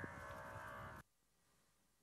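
Near silence: a faint, steady held tone over a low hum for about the first second, then it cuts off suddenly to complete silence.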